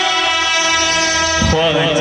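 An Indian brass band holding a long, steady chord on its horns and clarinets, accompanying a qawwali; about one and a half seconds in, a male singer's amplified voice comes in over it with a wavering, ornamented line.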